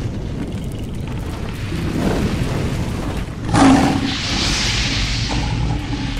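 Logo-intro sound effects: a low rumble throughout, a heavy boom about three and a half seconds in, then a bright hissing swell that fades.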